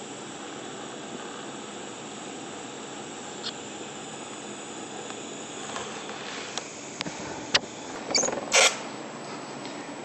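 DC TIG welding arc in argon hissing steadily during brazing, with the amperage backed off as heat builds at the end of the bead. It stops a little past halfway, and a few sharp clicks and a short clatter of handling follow.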